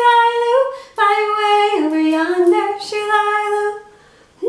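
A woman singing a children's song unaccompanied, holding each note. A short phrase, then a longer one after a brief break about a second in.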